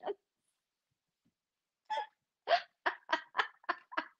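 A woman laughing in a run of short bursts, about four a second, starting about halfway in after a silent pause.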